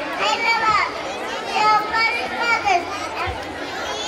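Young children's high voices reciting aloud on stage, without music.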